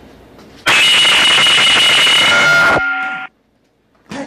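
Loud electronic buzzer sounding for about two seconds, then a fainter steady tone for half a second before it cuts off suddenly.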